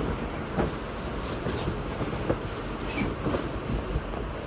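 Quilted comforter rustling as it is unfolded and spread out by hand, with soft, irregular swishes of fabric over a steady background hiss.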